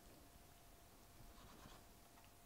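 Near silence, with faint scraping of a long, thin carving knife slicing through cured salmon.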